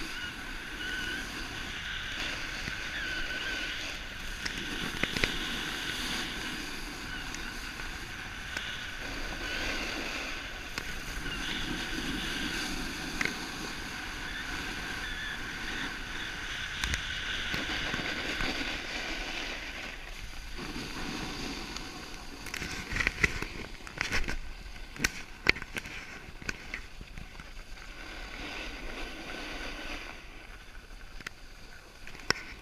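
Steady hiss and scrape of sliding fast down a groomed ski run, heard close to the microphone, with a cluster of sharp knocks about three-quarters of the way through.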